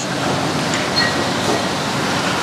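Steady rushing background noise with no voices, the ambient din of a busy open-fronted eatery.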